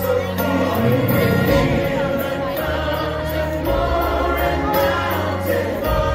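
Choir singing with instrumental accompaniment, with sustained bass notes underneath.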